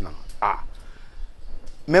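A single short, throaty croak-like vocal sound from a man in a pause between sentences, then quiet; his speech resumes near the end.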